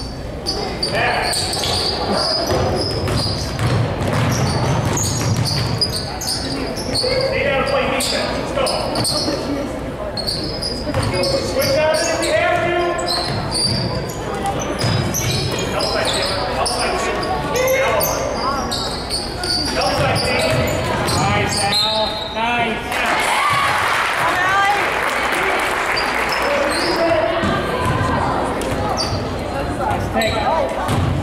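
Basketball bouncing on a hardwood gym floor during play, with spectators' voices calling out and talking in a large echoing hall. The crowd gets louder and noisier for a few seconds past the middle.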